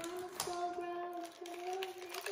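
A young girl humming a long, nearly level note, broken briefly twice, with a faint click about half a second in.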